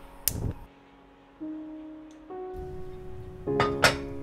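Steel saucepan set down on a gas stove's burner grate with a sharp clink about a third of a second in, and another sharp click near the end. Soft guitar background music plays underneath, its notes stepping upward from about a second and a half in.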